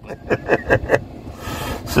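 A man chuckling in a run of short, breathy pulses, followed by a hissing breath near the end.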